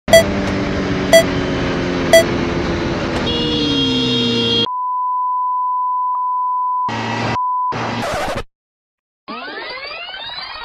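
Sport motorcycle engine running at high speed, then dropping in pitch as the rider slows hard, under three countdown beeps a second apart. A steady censor bleep then covers the rider's swearing, broken by short bursts of his voice and wind. After a brief silence comes a swirling, sweeping sound effect.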